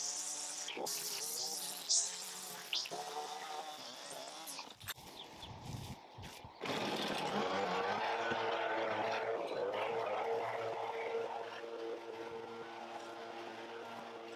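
A string trimmer buzzes while edging along a house foundation, its pitch wavering as it cuts. About six and a half seconds in, it gives way to the steadier, louder running of a leaf blower clearing the cuttings.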